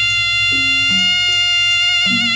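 A sronen, the Madurese double-reed shawm, holds one long, unbroken reedy note over short strokes on a kendang drum, played as kuda kencak horse-dance music.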